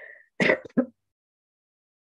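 A woman's short throat clear as her laughter ends, then complete silence from about a second in.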